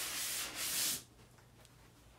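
A printed cardboard slip-on sleeve being slid up off a styrofoam box: a dry rubbing scrape of cardboard against foam that lasts about a second and then stops.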